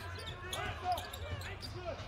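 A basketball bouncing on a hardwood court during play, with voices in the background.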